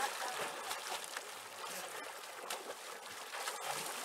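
River water splashing and sloshing around a person thrashing in it while catching a fish by hand, with a few brief sharper splashes.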